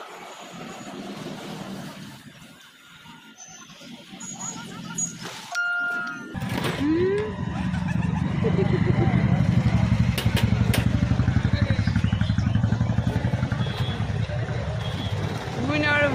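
A motorcycle engine starts about six seconds in, just after a short beep, and then idles with a steady, even low pulse under voices.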